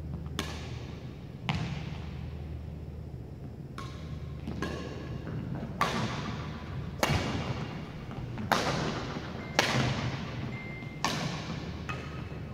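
Badminton rally: about eight sharp cracks of rackets hitting the shuttlecock, one every second or so with a longer gap after the second, each ringing out in the echo of a large gym. A steady low hum runs underneath.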